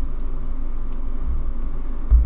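A steady low hum with a deeper rumble that swells briefly a little past the middle.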